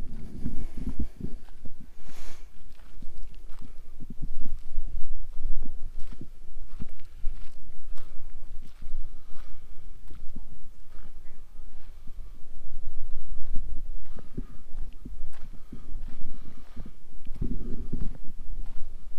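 Footsteps crunching on desert gravel as someone walks steadily, over a low rumble of wind on the microphone.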